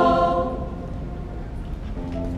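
A choir's held chord ending about half a second in and dying away in the church's echo, leaving only a low room rumble.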